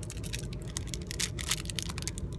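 Clear plastic packaging crinkling and crackling as a small bagged key ring is handled, with irregular little clicks thickest in the second half, over a low steady rumble.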